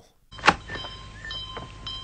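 Door sound effect from an old TV soundtrack: a sharp click about half a second in, then a thin steady whine with faint higher tones as the door opens.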